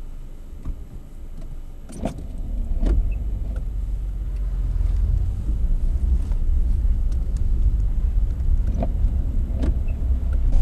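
Car engine and road rumble heard from inside the cabin, a low rumble that builds from about two and a half seconds in as the car gets under way, with a few short clicks along the way.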